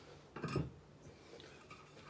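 A single brief knock about half a second in, followed by faint room tone.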